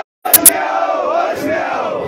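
Crowd of men shouting together, many raised voices overlapping. The sound cuts out completely for a moment at the start, then two sharp clicks come just before the shouting resumes.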